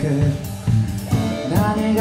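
Amateur rock band playing live: a male lead vocal sung over electric guitars, electric bass and a drum kit. The band thins out briefly in the first half, then comes back in fully with cymbal hits about a second and a half in.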